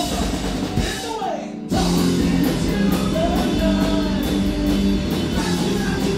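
Live rock band playing: electric guitars, drum kit and a male lead vocal. About a second in the band drops back briefly, then crashes back in louder.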